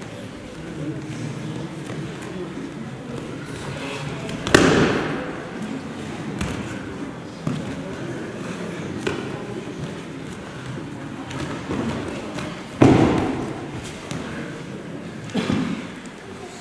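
Heavy thuds of a body falling onto tatami mats in aikido throws: two loud ones about four and a half and thirteen seconds in and a lighter one near the end, each trailing off briefly in the hall, with a few light knocks between.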